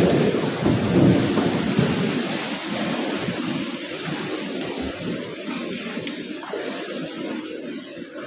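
A steady, rumbling noise with no clear pitch, loudest at the start and fading gradually over several seconds.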